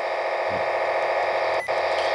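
Trunked-radio control channel data coming through a handheld scanner's speaker as a steady buzzing noise, with one brief click about one and a half seconds in.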